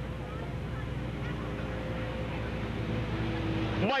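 A pack of dirt-track stock cars on a pace lap, their engines running together at low, steady revs and growing a little louder as the field approaches.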